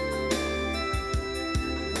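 A live band playing an instrumental passage: an electronic keyboard holding organ-sound chords over sustained bass notes, with a few kick-drum beats.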